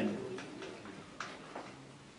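A few scattered light taps, about three in two seconds, from writing on a board, over a faint steady hum.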